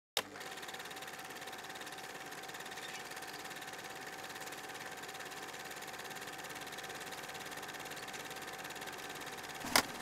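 A steady, quiet mechanical whirring hum with a constant high tone in it. It starts on a click and breaks off with another click just before the end.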